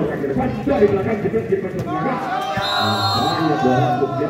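Several people talking and shouting over one another. In the last second and a half one voice holds a long, drawn-out shout.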